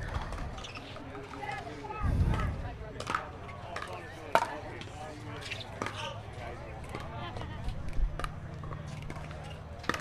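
Pickleball paddles striking a hard plastic ball in a rally: several sharp pops at irregular intervals, the loudest about four seconds in, over faint voices from the surrounding courts.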